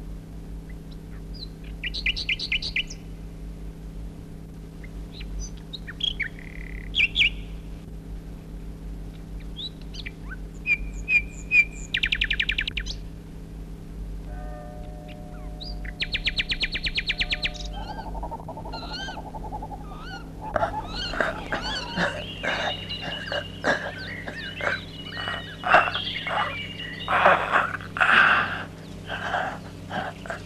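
Birdsong: separate calls and rapid trills at first, then, after about twenty seconds, a dense chorus of many birds calling over one another, all over a steady low hum.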